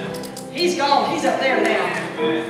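Live church worship band music with a woman's voice over it.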